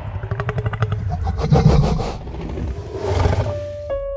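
Film soundtrack of a dinosaur growling in rapid rattling pulses, followed by a louder roar-like burst, over music. A sustained piano note comes in near the end.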